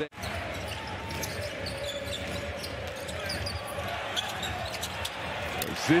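Basketball arena during play: steady crowd noise with a basketball bouncing on the court. The sound drops out for an instant at the very start.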